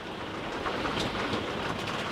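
Steady rain drumming on a moving camper van's roof and windscreen, heard from inside the cab along with road noise, with one faint tick about a second in.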